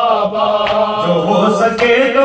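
A male voice chanting long held notes of an Urdu salam, a Shia elegy, in a melodic line that steps up slightly in pitch about halfway through.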